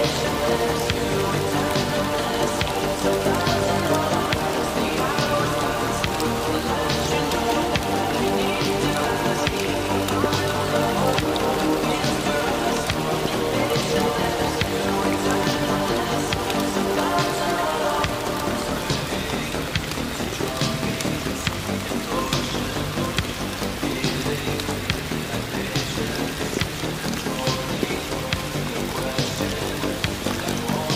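Steady rain with fine drop ticks, layered over slow music with long held notes; the music thins out a little over halfway through.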